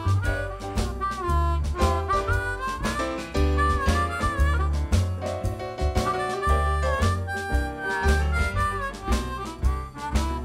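Amplified blues harmonica played cupped against a microphone, with bent, sliding notes, over a blues band's accompaniment of steady drum beats and a stepping upright bass line.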